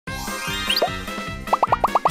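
Upbeat intro jingle with a bouncy beat, overlaid with cartoon pop sound effects: a rising glide near the start, then a quick run of about six short rising pops in the second half.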